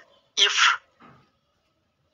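A man's voice: one short, breathy burst about half a second in, then a faint breath about a second in.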